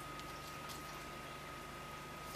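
A faint, steady high-pitched electronic tone holding one pitch, over a low hum and hiss.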